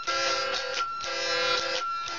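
Electric guitar strummed in chords, in a steady rhythm of repeated strums.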